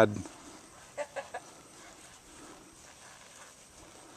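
Three short clucks in quick succession about a second in, then only faint background.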